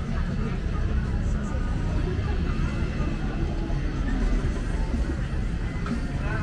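Busy street-market ambience: many people talking over music playing, above a steady low rumble.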